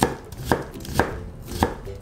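Kitchen knife julienning cucumber slices on a wooden cutting board: four crisp knife strokes, about two a second, each ending in a knock of the blade on the board.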